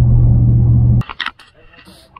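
Steady low drone of a pickup truck's engine and road noise heard inside the cab while driving. It cuts off abruptly about a second in, leaving much quieter sound with a few faint clicks.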